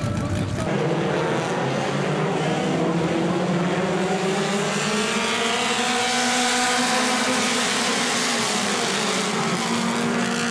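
A pack of short-track stock cars running together on the track: many engines in a steady combined drone whose pitch rises and falls slowly as the field goes by.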